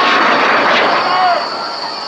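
A Kusanagi ryūsei, a traditional hand-made black-powder rocket, rushing upward just after launch: a loud hissing roar, strongest in the first second, then fading as it climbs. A voice calls out over it about a second in.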